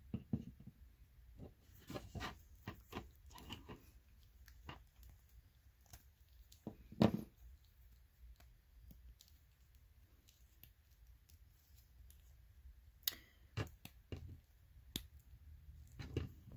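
Faint clicks, taps and rustles of hands handling a plastic action figure, with a louder tap about seven seconds in.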